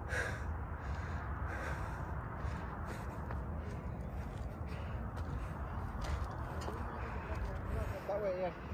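A climber's heavy, out-of-breath breathing close to the microphone after a steep ascent, over a steady low rumble.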